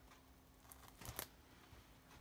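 Near silence: room tone with a faint steady hum, broken by a few faint short clicks and rustles about a second in from hands handling a cardboard shipping box.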